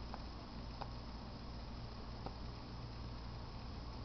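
Quiet room tone: a low steady hum with a few faint ticks.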